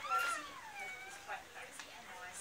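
A small child's high-pitched voice calling out once at the start, a drawn-out sound that rises and then falls in pitch, followed by fainter children's voices.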